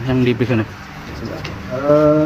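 A man's voice: a few spoken syllables, a short pause, then a long drawn-out hesitation sound, one held vowel on a steady pitch near the end.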